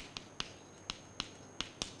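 Chalk writing on a chalkboard: about seven sharp, irregular taps and clicks of the chalk against the board as a word is written.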